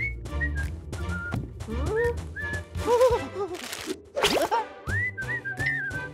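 Comic cartoon score: short whistle-like notes that glide up and bend over a steady bass line, punctuated by quick clicks, with a swooping sound effect a little after four seconds in.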